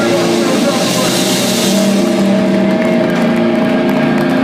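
Live heavy band's distorted electric guitars holding a droning chord at the end of a song, with a cymbal wash that fades out about halfway through while the amplified guitar tone rings on.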